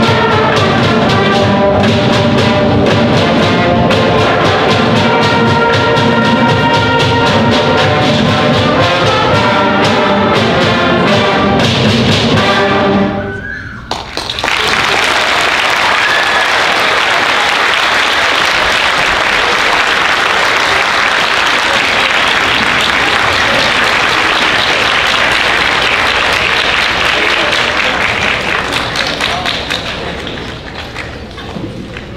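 Middle-school concert band with brass, woodwinds and percussion playing the final bars of a piece, stopping about 13 seconds in. An audience then applauds, the clapping tapering off near the end.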